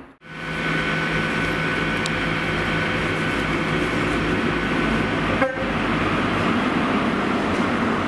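A diesel-powered train running slowly past on the near platform line, with a steady engine note and a high whine held over it. The sound breaks briefly about five and a half seconds in.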